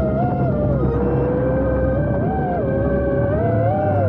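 Whine of a 6-inch FPV quadcopter's brushless motors (2200 kV) and three-blade props, heard from the onboard camera. The pitch glides up and down every second or so as the throttle changes through the low flight.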